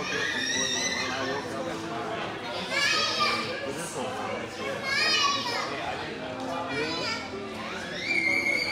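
Indistinct chatter of a crowd gathering in a large hall, with children's high-pitched voices calling out several times.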